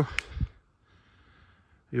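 A man's speech breaks off, followed by a short click and a brief low thump, then about a second and a half of near silence before his voice returns near the end.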